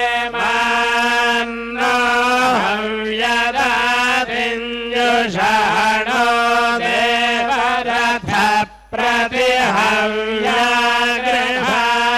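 Hindu priests chanting Sanskrit Vedic hymns aloud, each line held on a steady reciting pitch with small rises and falls at syllable ends and a short break for breath about eight seconds in.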